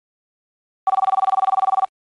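A telephone ringing: a rapidly warbling two-tone electronic ring lasting about a second, starting a little under a second in.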